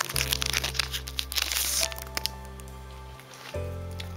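Foil wrapper of a Pokémon trading card booster pack crinkling and tearing as it is opened, densest in the first two seconds and thinning out after, over background music with long held notes.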